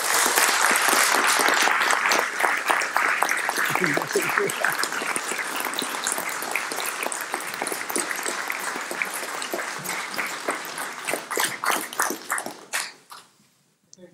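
Audience applauding, loudest at first, then thinning out and dying away near the end.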